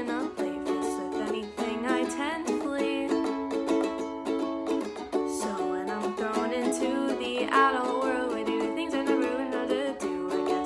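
A ukulele strummed steadily, with a woman's voice singing over it near the start and again from about halfway through.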